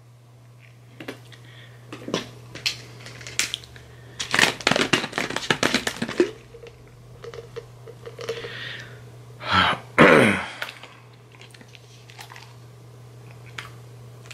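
A disposable plastic water bottle crinkling and crackling in the hand, with scattered clicks and then a rapid run of crackles about four seconds in as the cap is twisted open. A louder rush of sound follows about ten seconds in.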